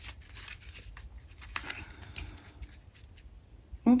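A deck of oracle cards being handled, shuffled and fanned by hand: quiet, scattered flicks and rustles of card edges.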